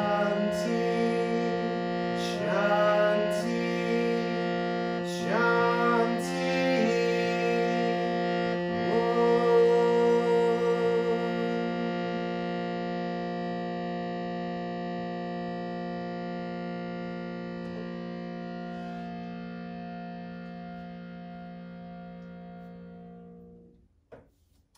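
Harmonium holding a steady drone chord while a man chants "Om" over it several times in the first ten seconds or so. The chord is then sustained alone, slowly fading, and cuts off just before the end.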